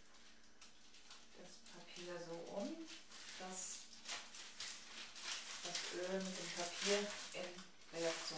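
Tissue paper rustling and crinkling as hands spread and fold it over a person's oiled back, from about two seconds in, with a soft voice speaking.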